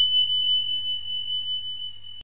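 A single steady high-pitched electronic beep tone, held and slowly fading, with a faint low hum beneath it: an end-screen sound effect.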